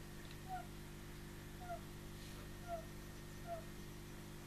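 Frogs calling in the background: short, slightly falling chirps about once a second, faint over a steady low hum.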